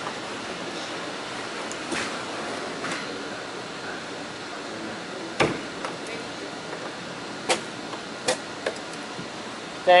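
A few sharp knocks and clicks of a hand tool prying at old wooden floor pieces inside a fiberglass boat hull, over a steady background hiss. The loudest knock comes about halfway through, with three lighter ones near the end.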